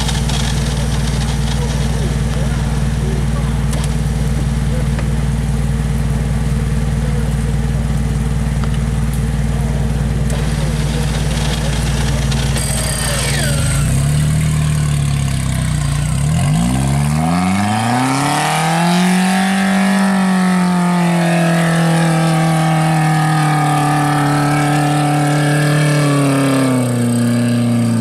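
Engine of an off-road trial vehicle bogged in deep mud, running steadily at low revs, then about halfway through dipping and revving up hard, held at high revs to near the end.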